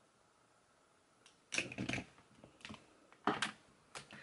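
Makeup brushes and products clicking and clattering as they are put down and picked up: a few short bursts of clicks, starting about a second and a half in.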